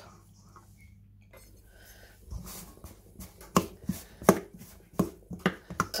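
Cold butter being cut into cubes and added to a steel bowl of flour: about two quiet seconds, then a series of sharp, irregular taps and clicks.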